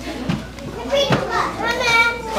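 Young children chattering and calling out together, with one high child's voice held briefly near the end.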